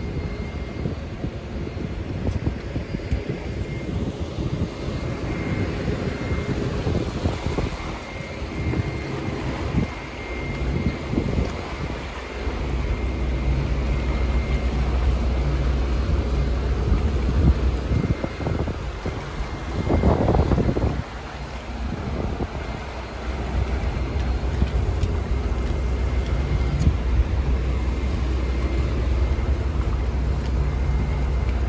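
Suzuki 150 outboard motor running steadily as the boat trolls, a low hum that grows louder about twelve seconds in. Wind buffets the microphone throughout, with a brief louder rush of noise about twenty seconds in.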